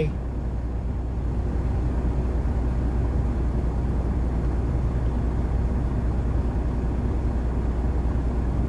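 Semi truck's diesel engine idling at a standstill, a steady low rumble heard from inside the cab.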